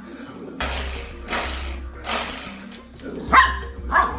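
A golden retriever puppy barks twice near the end, the first bark the louder. Three short noisy bursts come before the barks.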